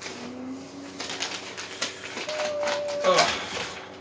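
Packing wrap rustling and crinkling as a part is pulled from a shipping box and unwrapped, with a short hummed vocal sound near the start and a held 'ooh' that slides down near the end.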